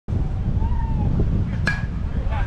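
Wind rumbling on the microphone, then near the end a single sharp metallic ping with a brief ring: a softball bat hitting the ball.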